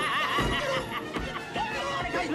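A man's high-pitched, wavering screams, in short warbling bursts, over a film score.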